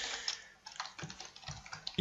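Typing on a computer keyboard: a run of irregular, separate key clicks.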